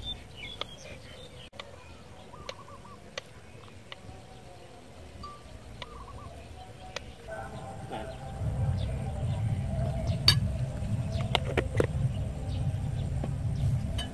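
A kitchen knife taps now and then on a wooden chopping board as garlic is sliced, with birds calling faintly in the background. From about eight seconds in, a low rumble of wind on the microphone rises. Over it a spoon clinks several times against a jar and bowl as seasoning is scooped out.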